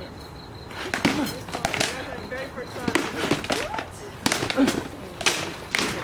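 Armoured sparring: from about a second in, a quick, uneven series of sharp knocks as rattan swords strike shields and armour, with voices mixed in.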